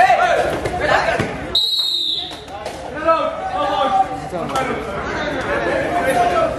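Men's voices shouting during a kabaddi raid, with one short, high, steady whistle blast about one and a half seconds in, typical of the referee's whistle stopping play as a point is scored.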